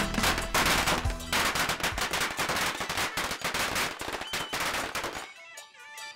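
A string of firecrackers going off in rapid, dense crackling pops that cut off suddenly about five seconds in. Background music takes over near the end.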